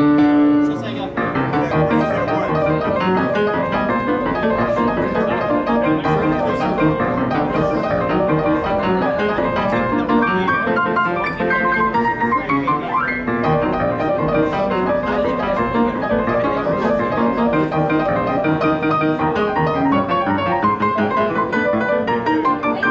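Steingraeber grand piano played continuously: a held chord rings for the first second, then dense chords and runs follow, with a quick upward run a little past halfway.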